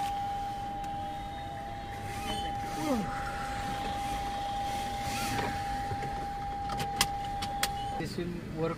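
Toyota Innova HyCross cabin warning tone: one steady beep held without a break, cutting off suddenly at the end, sounding while the hybrid system is stopped and tied to the seat belts. Two sharp clicks come just before it stops.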